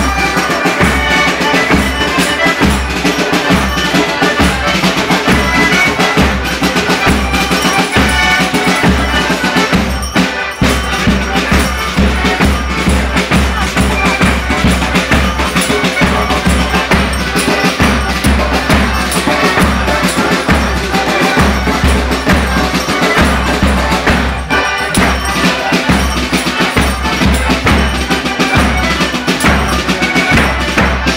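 Live traditional folk music with a steady drum beat and percussion.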